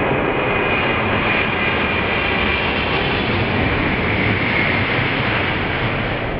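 Boeing 737 airliner flying low on landing approach: its CFM56 turbofan engines give a steady, loud noise with a high whine held through it.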